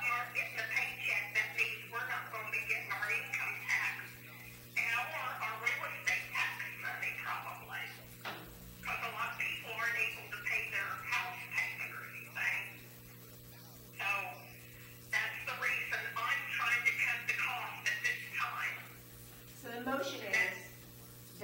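Indistinct, thin-sounding conversation around a meeting table in a small room, in several stretches with short pauses, over a steady low hum.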